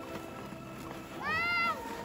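A child's brief high-pitched squeal, rising then falling, about a second and a half in, over steady background music.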